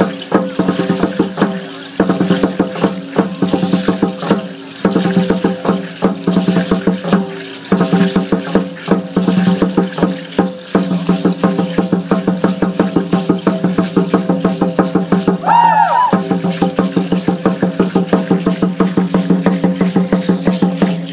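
Drumming for Aztec-style ceremonial dance: sharp drum beats about four times a second, over a steady held tone that breaks off briefly a few times. A short rising-and-falling glide sounds near the end.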